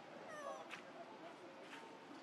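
Faint, short whimpering calls from young macaques, sliding down in pitch, with a brief click about three quarters of a second in.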